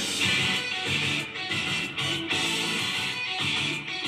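An anime's opening theme song with guitar, playing from a television. The song starts abruptly at the beginning, right after a brief quiet gap.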